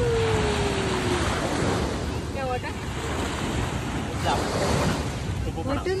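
Small waves washing up onto a sandy shore, a steady wash of surf, with wind buffeting the microphone.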